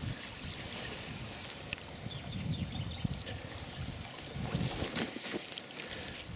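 Wind rumbling on the microphone, with dry grass crackling and rustling under footsteps and a few sharper snaps.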